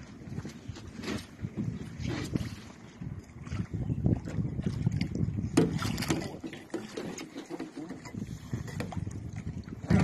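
Water splashing and knocking against the side of a small boat as a hooked paddlefish thrashes alongside, with the loudest splash about six seconds in.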